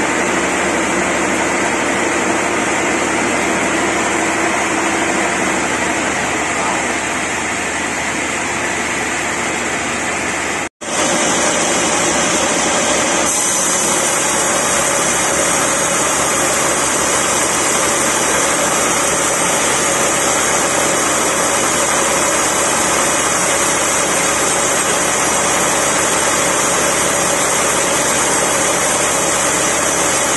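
Band-saw mill running steadily, its engine driving the blade as it cuts lengthwise through a large merbau log. The sound cuts out for an instant about eleven seconds in, and a brighter, hissier cutting sound follows.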